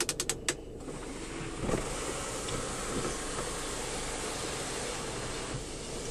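Audi A4 sunroof rotary switch clicking through its detents, then the electric sunroof motor running steadily for about five seconds as the glass panel slides open, stopping shortly before the end.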